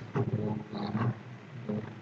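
A man's low, indistinct voice mumbling under his breath in two short stretches in the first second, then once more briefly near the end.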